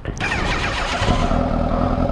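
Sport motorcycle engine running under throttle while riding. It comes in loud at once, its pitch slides down over the first second, then holds steady.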